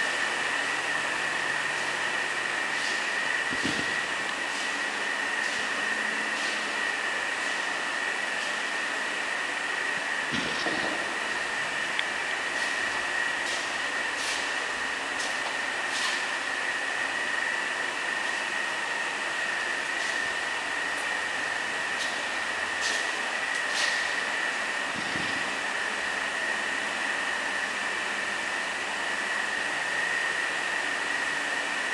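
Steady hiss with a constant high-pitched whine, broken by a few faint clicks and three soft thumps.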